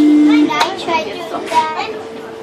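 A loud steady tone cuts off about half a second in, followed by young girls talking and laughing over a hand-clapping game, with a few sharp claps.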